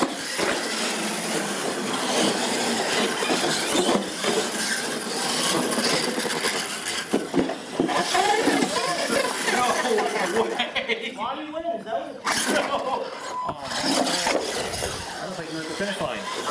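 Radio-controlled monster trucks racing on a hard hall floor: their electric drive motors running and the trucks driving over the floor and a ramp, with people's voices mixed in.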